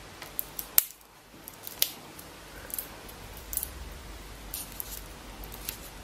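A Coca-Cola bottle's plastic ribbon wrapper being peeled and torn by hand along its perforated strip: quiet, scattered crackles and ticks of the plastic film.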